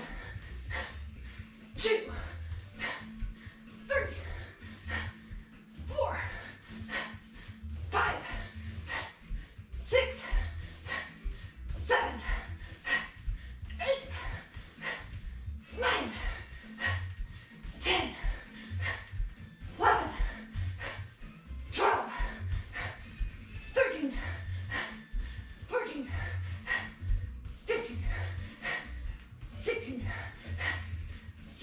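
Short, sharp vocal sounds, one every one to two seconds, each falling in pitch, over background music with a steady beat.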